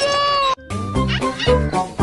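A held cry cuts off abruptly about half a second in. Then bouncy cartoon background music with a steady bass beat, over which a cartoon cat meows.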